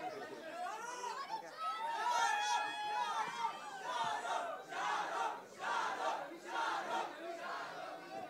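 A crowd of fans shouting all at once, many voices overlapping, the noise swelling and dipping in waves.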